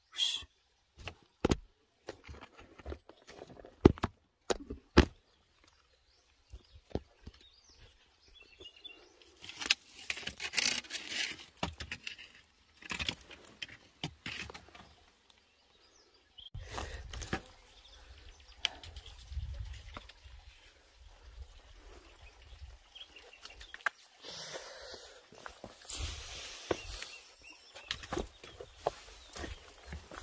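Irregular clicks, knocks and crunches of footsteps and gear on loose gravel and rock. Gusts of wind rumble on the microphone about halfway through.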